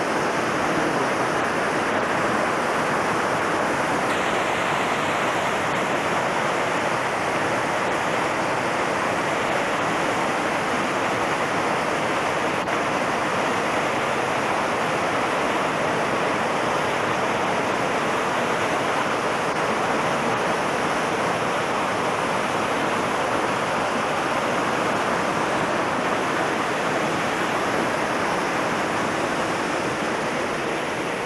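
River water rushing over rocks in rapids, a steady, even rush with no break.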